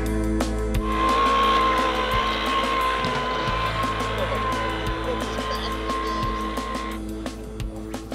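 Background music with a steady beat, over which a small radio-controlled model boat's electric motor whines steadily as the boat runs across the water, from about a second in until shortly before the end.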